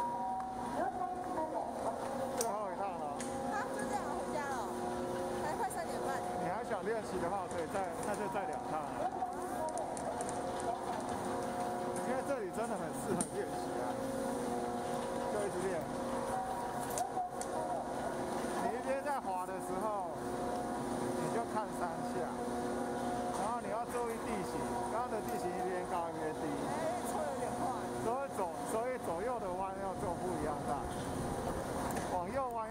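Chairlift station machinery humming steadily as the chair is carried through the terminal past the bull wheel, with indistinct voices over it.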